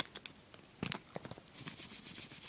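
Small plastic bag of loose glitter being handled and opened one-handed: faint crinkling and light taps, a little louder just under a second in.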